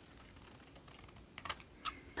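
Small scissors snipping paper, heard as a few faint, short clicks in the second half; otherwise near quiet.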